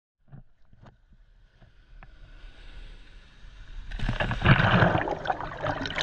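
Seawater lapping and splashing at the surface, growing louder, then a loud rushing wash about four seconds in as a wave breaks over the camera.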